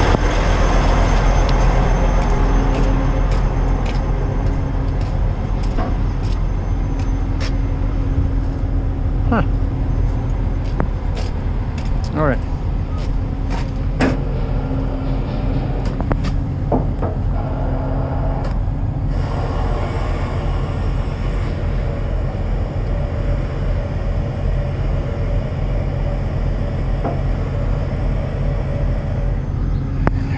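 Kenworth semi truck's diesel engine idling steadily with the PTO engaged, driving the hydraulic pump for the lowboy trailer's gooseneck, with scattered sharp clicks and knocks over it. About two-thirds of the way through, a higher steady hiss joins in.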